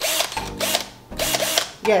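Pink cordless drill with a mixer whisk fitted, run twice in short bursts of under a second each.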